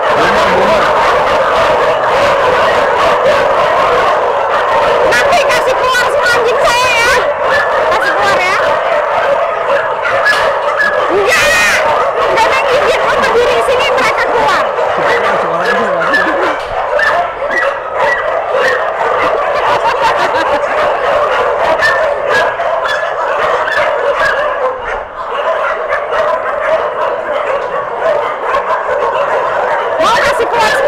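Many kennelled dogs barking at once, a loud, continuous din of overlapping calls with no break.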